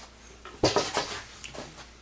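A sudden clatter of hard objects knocking together, several sharp knocks packed together about half a second in, then a few softer knocks, from handling around the workbench.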